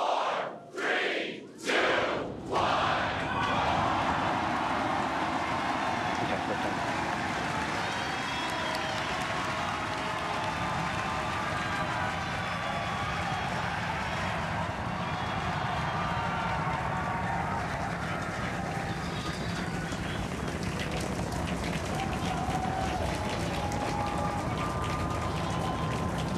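Starship's Super Heavy booster lifting off on its 33 Raptor engines: a continuous roar that deepens into a heavier rumble about ten seconds in, with a crowd cheering and shouting over it.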